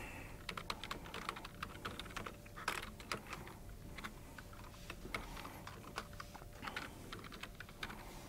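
Computer keyboard typing: quick, irregular keystrokes as a line of code is entered, faint and clicky.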